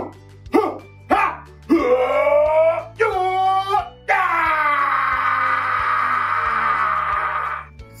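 A man's voice wailing over background music with a steady bass line: a few short cries, then one long held cry starting about halfway through.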